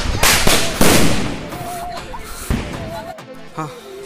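A bundle of small firecrackers bursting: a rapid string of sharp bangs in the first second, then one more bang about two and a half seconds in.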